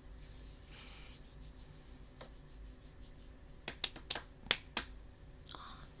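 Quiet room tone with low hum, then a quick run of about half a dozen sharp clicks in the second half, the last one about a second later.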